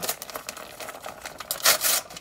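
Packaging of a new RAM module being opened by hand: irregular rustling and crackling, with a louder burst of crackling near the end.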